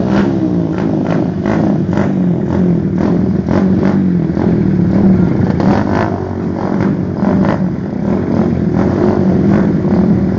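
Suzuki Raider R150 motorcycle engines revving, the pitch wavering up and down, with many short sharp cracks over it.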